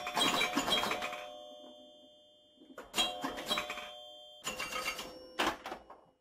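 Three bursts of bright bell-like jingling, each leaving several tones that ring on and slowly fade, the last ending just before silence.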